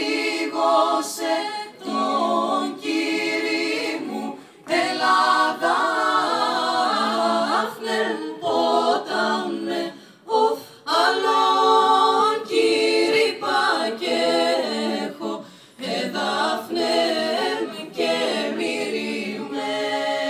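A small a cappella vocal group, mostly women, singing together in harmony into microphones. The phrases are broken by short pauses every few seconds.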